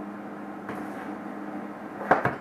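Steady low electrical hum of the room, with a brief faint rustle about a third of the way in as something is handled on the countertop.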